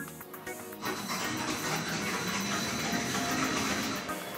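Skid-resistance test machine running: a motorbike tire spins on a water-sprayed concrete manhole cover, a steady noisy rush with a thin high whine that starts about a second in, over background music.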